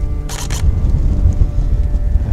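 Wind rumbling on the microphone, with a quick pair of clicks about a third of a second in: a camera shutter firing.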